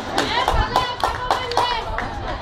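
Spectators clapping in a quick, even rhythm, about three to four claps a second, with voices shouting along.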